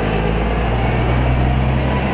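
A diesel rigid lorry driving past close by: a steady, loud low engine drone with road noise.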